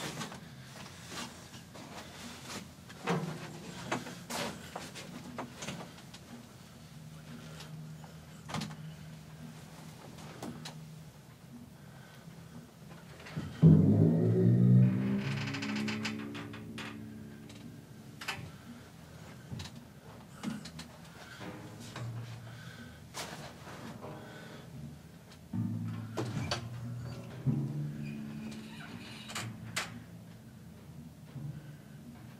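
Pedal timpani being tuned: light taps on the heads leave low notes ringing at several points, and one much louder stroke about halfway through rings with its pitch bending. Scattered clicks and knocks come from handling the mallets and drums.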